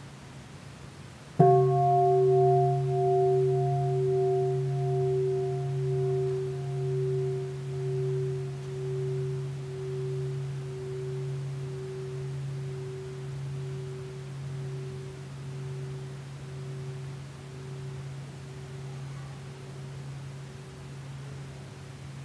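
Large bronze bowl bell struck once about a second and a half in, then ringing with a deep, slowly fading tone that wavers in a steady pulse and is still sounding at the end.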